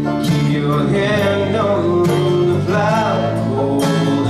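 Live acoustic band music: guitars strumming and picking under a man's singing voice holding and bending long notes.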